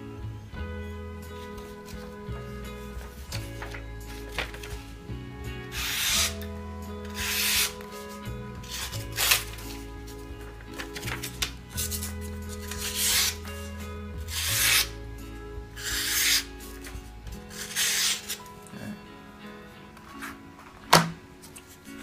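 A long Japanese slicing knife with a 180 mm blade drawn through a sheet of hand-held paper: about nine short cuts, roughly one every second and a half, each going through evenly, the sign of a sharp edge. Background music with steady low notes runs beneath, and a single sharp click comes near the end.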